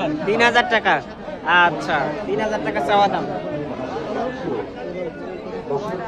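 Several people talking over one another in a busy market crowd.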